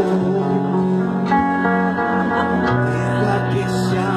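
Rock band playing an instrumental passage of a song: guitar chords over bass and drums, with the bass note changing about a second and a half in and again near three seconds.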